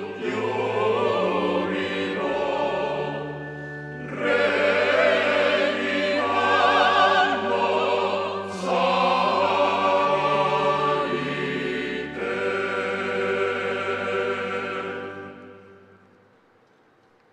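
Choir singing slow, sustained chords with vibrato over long held low notes, fading out near the end.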